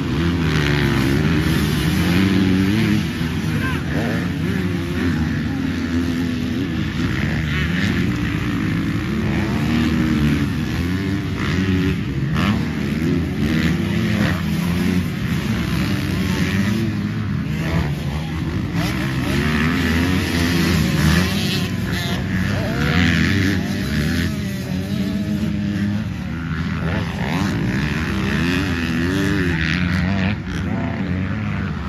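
Motocross dirt bike engines racing on the track, their pitch rising and falling over and over as the riders open and close the throttle through the course.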